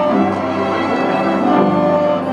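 Small string ensemble of violins and a cello playing together in held, smoothly bowed notes.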